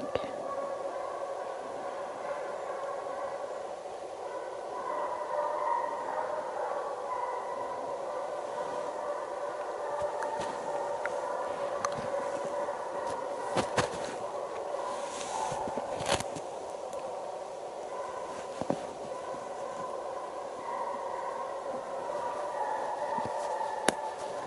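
Russian hounds giving tongue in full cry on a hare's trail, their baying blending into one continuous pitched chorus that swells and fades. There are a few sharp clicks around the middle.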